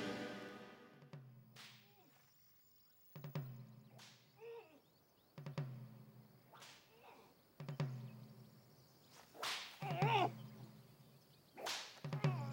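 Whip lashes on a bare back at a military flogging: a sharp crack about every two seconds, each with a short low thud. Between strokes the flogged man groans through a leather gag.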